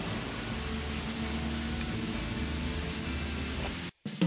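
Steady hiss-like background noise with faint music beneath it, cutting off abruptly just before the end.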